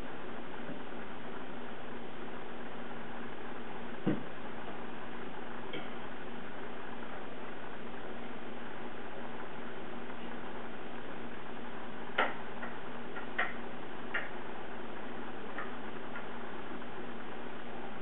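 Steady background hiss with a faint low hum, broken by a few short sharp clicks: one about four seconds in, then a small cluster of four later on.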